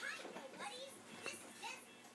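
Faint children's voices in the background: short, high-pitched calls and chatter.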